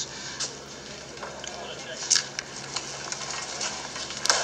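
A television episode's soundtrack heard through the set's speaker in a lull between lines: a low murmur of background voices with a few light clicks and knocks, the sharpest about halfway through.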